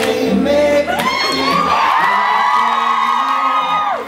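Live acoustic guitar pop cover with an audience of fans breaking into high-pitched screaming and whooping about a second in, held for nearly three seconds before dropping away at the end.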